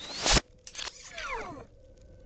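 Film sound effects of Iron Man's armour played in reverse: a swelling whoosh that cuts off sharply about a third of a second in, a few mechanical clicks, then several falling whines as the forearm rocket launcher and suit servos run backwards.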